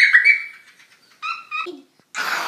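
A child's high-pitched squeal with a slightly falling pitch, then a second shorter squeal about a second later.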